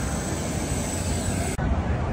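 Steady jet-aircraft noise, an even rushing roar with a thin high whine over it. It cuts off abruptly about one and a half seconds in and is replaced by a duller low rumble.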